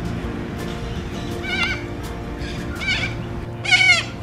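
Cockatoos screeching: three short, wavering calls, the last and loudest near the end, over background music with sustained tones.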